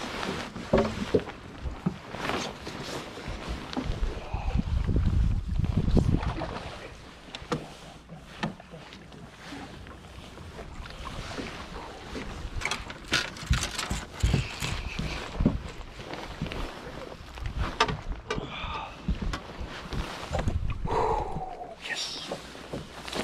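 Scattered knocks and clicks of rod, reel and boots on a bass boat's deck while a hooked bass is being played. Gusts of wind hit the microphone, loudest about four to six seconds in.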